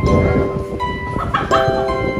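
Music of held, steady notes, several sounding at once and changing pitch now and then; for the first second and a half a rough low noise runs underneath it.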